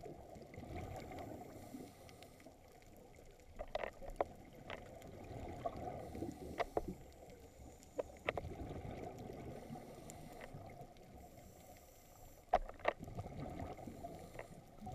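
Muffled underwater sound picked up through an action camera's housing: a low rushing of water, with sharp clicks now and then, several in quick pairs.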